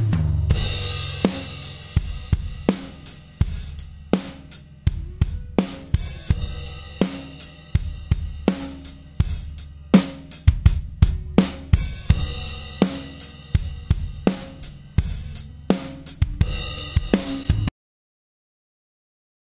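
Recorded drum kit playing a steady beat of kick, snare, hi-hat and cymbal, heavily compressed through a ReaComp compressor at 4:1 with a fast attack. The release is lengthened and the threshold moved while it plays, so the compression changes and the drums pump. Playback cuts off suddenly just before the end.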